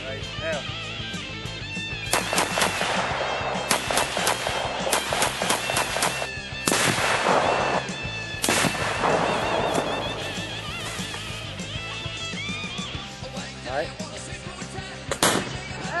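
Rock music playing throughout, with a series of loud gunshots from about two seconds in. Two larger blasts trail off for a second or more, near seven and eight and a half seconds, and a single sharp shot follows near the end.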